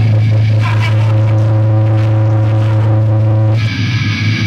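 Amplified electric bass and guitar ringing out a steady, low sustained drone through the amps, then the full metal band with drums comes in near the end.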